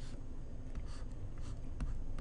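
Stylus scratching and tapping faintly on a tablet screen while drawing short strokes, with a few light ticks.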